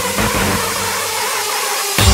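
Hardcore techno track in a build-up: a loud, distorted noise wash holds steady while the pounding kick drum hits a few times, then drops out about half a second in.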